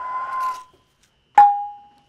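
A breathy whistle blown through the spout of a small ceramic water pot, stopping about two-thirds of a second in. About a second later the pot gives a sharp click as it is struck, with a clear ringing tone that dies away over about half a second.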